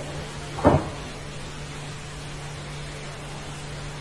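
A single short thump under a second in, over a steady low hum and hiss.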